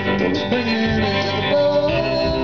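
Live country-blues band playing: guitar, bass guitar and drums, with held sung or sustained notes over a steady rhythm.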